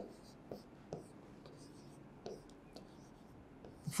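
Marker pen writing numbers on a whiteboard: a few short, faint strokes and squeaks, scattered and irregular.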